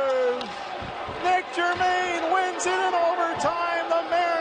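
A hockey play-by-play announcer's drawn-out goal call, held on one slowly falling pitch, ends about half a second in. About a second later excited, high-pitched shouting takes over in short bursts, with a few sharp knocks among it.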